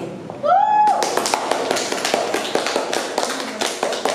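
A small group of people clapping by hand: a dense patter of claps that starts about a second in, just after one voice calls out, rising in pitch.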